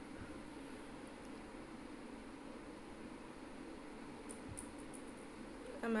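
Faint, steady background hiss, with a few faint soft clicks about a second in and again near the end.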